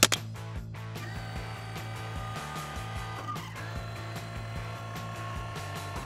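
A cartoon button click, then a steady mechanical hum of a flying saucer coming in to land, under background music.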